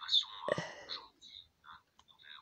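Low, indistinct speech, close to a whisper, apparently from a video playing on a smartphone's speaker, heard over a faint steady high-pitched whine. The voice is strongest in the first second and breaks into short scraps after that.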